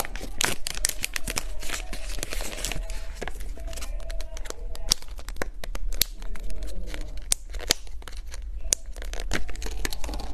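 Plastic packaging of a wrapped cake being torn open and handled: a dense run of sharp crinkles and crackles.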